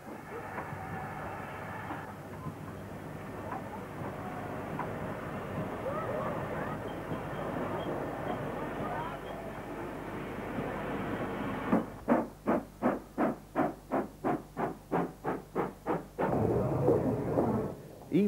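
Steam locomotive: a steady hiss of steam, then from about two-thirds in a regular exhaust beat of about four chuffs a second as it works, ending in a steady hiss with a low rumble.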